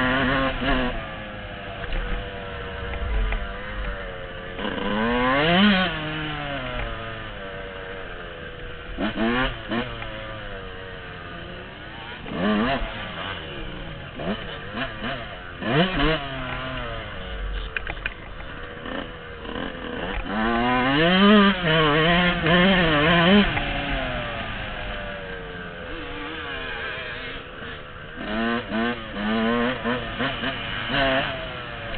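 Blue Yamaha dirt bike's engine heard from the rider's seat, revving up and down again and again through the gears as it is ridden, with several quick throttle surges and a longer hard pull about two thirds of the way through.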